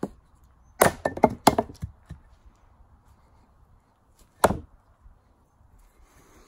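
An axe-headed Thor's hammer (a throwing hawk) chopping into wood on a stump chopping block. A light tap, then a quick run of several blows a little under a second in, and one hard single chop a few seconds later.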